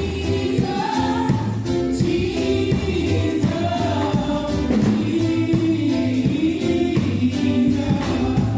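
Three women singing a gospel song together into microphones, their voices carried over a sound system, with a bass line and a steady beat underneath.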